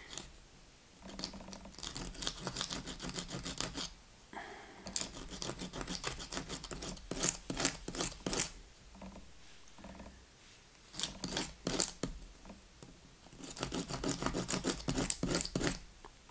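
A hard Ipomoea pes-caprae (beach morning glory) seed rubbed back and forth by hand on a small piece of sandpaper: rapid scratching strokes in four bursts with short pauses between. The seed coat is being scarified, worn thin so the seed can take up water and germinate.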